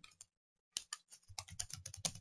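Computer keyboard typing: a faint, rapid run of keystrokes that starts about a third of a second in and goes on to the end.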